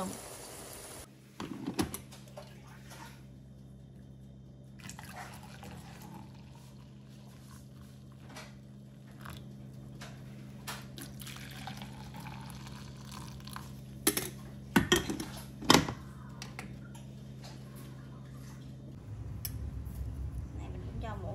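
Frying sizzle from a pan that cuts off about a second in, then coffee poured from a glass carafe into a cup over a steady low hum, with a few sharp knocks of cups or the carafe set down on the counter.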